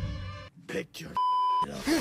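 A single steady electronic beep, about half a second long and starting just past a second in, of the kind used as a censor bleep over a word.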